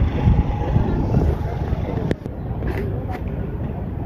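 Low, uneven outdoor rumble with faint voices in the background, and one sharp click about two seconds in.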